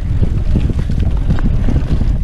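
Wind buffeting an action camera's microphone as a 2019 Specialized Stumpjumper alloy mountain bike rolls fast down dirt singletrack, a dense low rumble with small knocks and rattles from the tyres and bike over the ground.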